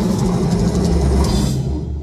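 Death metal band playing live, with distorted guitars, bass and drums, recorded loud. About one and a half seconds in, the high end of the guitars and cymbals drops away and a low bass rumble carries on alone.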